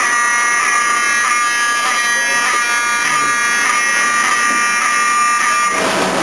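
Apartment building fire alarm sounding a steady, harsh buzzing tone, set off by smoke from cooking; it cuts off suddenly near the end.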